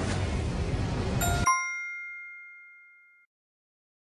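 A bell-like ding about a second and a half in, ringing out and fading over about two seconds, as a quiz countdown timer runs out. A steady noisy background effect cuts off just as the ding sounds.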